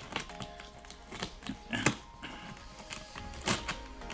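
Soft background music with a few sharp clicks and scrapes from hands working at a taped, plastic-wrapped cardboard box, the loudest about two seconds in and again near the end.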